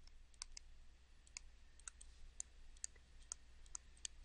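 Faint, irregular clicks and taps of a stylus on a tablet screen during handwriting, about three a second.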